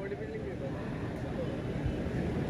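Faint, indistinct voices over a steady low rumble.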